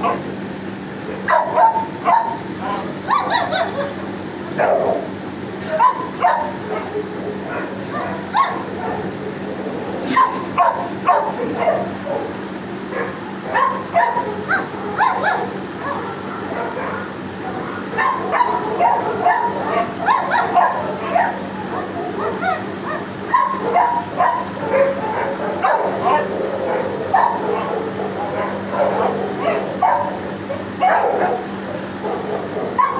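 Many shelter dogs barking, yipping and whining together in the kennels, overlapping without a break, over a steady low hum.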